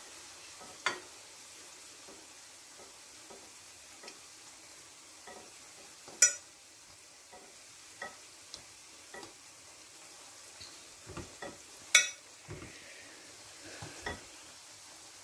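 Plantain slices frying in shallow oil in a non-stick frying pan, a steady sizzle. A few sharp clicks stand out over it, the loudest about six and twelve seconds in.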